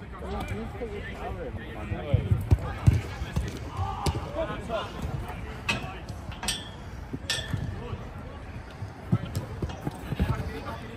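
A football being kicked and bouncing on artificial turf, several dull thuds close together about two to three seconds in and a few sharper strikes later, with players' shouts and calls across the pitch.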